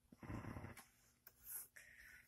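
Near silence in a small room, broken by a man's hesitant "um" near the start and a brief faint noise past the middle.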